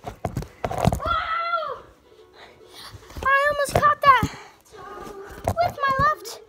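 A child's high-pitched voice making drawn-out wordless calls, with sharp knocks and clatter during the first second.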